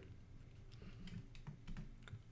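A few faint clicks of a computer keyboard, with a low room hum underneath.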